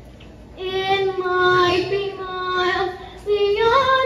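A child's voice singing a slow solo song on stage, holding long sustained notes. It begins about half a second in after a short pause, and the melody climbs near the end.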